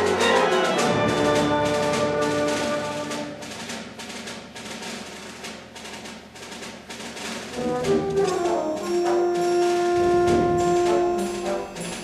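School band playing a symphonic piece. A loud held chord dies away about a second in, leaving quieter repeated percussion strokes; around eight seconds in the brass comes back with louder held chords.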